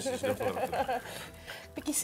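Talking with a light chuckle, then a quieter stretch of under a second.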